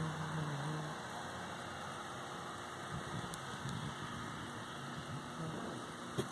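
Chorus of periodical cicadas: a steady, unbroken drone of many insects calling at once.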